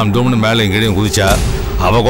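A man talking in a low voice, a continuous stretch of dialogue.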